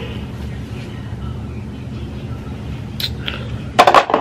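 Steady low room hum, with a light click about three seconds in and a quick cluster of loud knocks near the end as the recording phone or camera is grabbed and handled.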